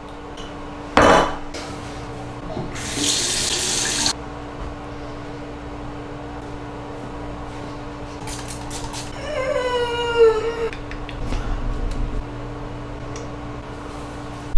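A bathroom sink tap runs for just over a second, about three seconds in, while a face is washed, over a steady low hum. A short loud sound comes about a second in. Near the middle, a person's voice slides downward once without words.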